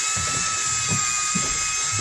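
Electric fishing reel's motor winding in line in a steady high whine, working under load as it hauls a heavy grouper up from deep water.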